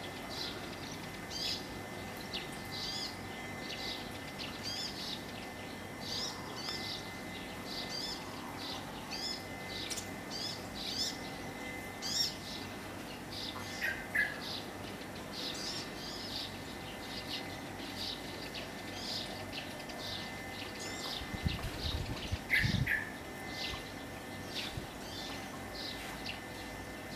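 Small birds chirping steadily, short high calls repeating about once or twice a second, with a louder, lower call midway and again near the end. A few low thumps come near the end.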